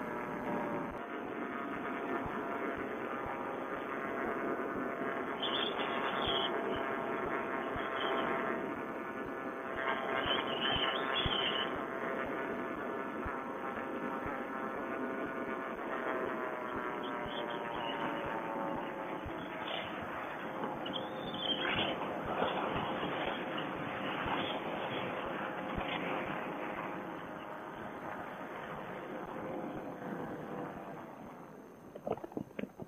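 Vittorazi Moster two-stroke paramotor engine and propeller running steadily, heard through a Bluetooth headset microphone. About halfway through, its pitch eases slowly down as the throttle is pulled back for the landing approach.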